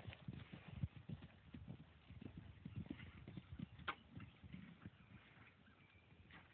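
Faint hoofbeats of a grey horse cantering on a grass field, a run of soft dull thuds that die away about five seconds in as the horse moves off.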